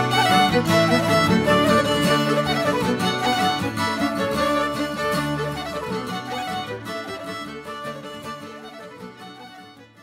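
Irish traditional instrumental tune played on two fiddles with acoustic guitar and Irish flute, fading out steadily through the second half until it is almost gone at the end.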